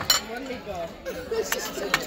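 People talking and laughing over a meal, with three sharp clinks of tableware: the loudest just at the start and two near the end.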